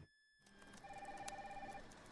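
Office desk telephone's electronic ring: one faint burst about a second long, starting about a second in.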